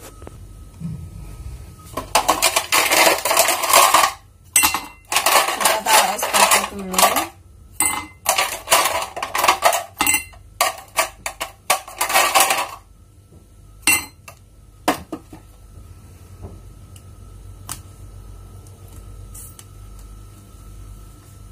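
Ice cubes clattering and rattling into a glass tumbler in several bursts of a second or two each. Near the end come a few light single clicks of a metal spoon against a plastic tub.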